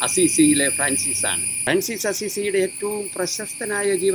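A man talking in Malayalam over a steady high-pitched drone of insects that holds without a break behind his voice.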